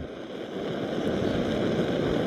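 Screw-on gas canister camping stove burning under a pot, a steady hiss of the burner flame that grows a little louder after the first half second.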